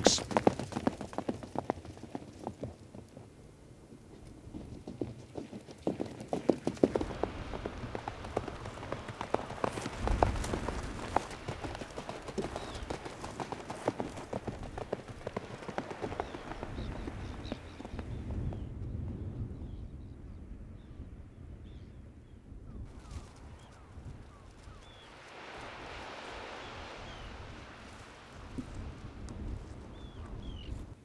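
Hoofbeats of a ridden Icelandic horse moving over sand: many quick, irregular strikes that are loudest in the first half and thin out about two thirds of the way through.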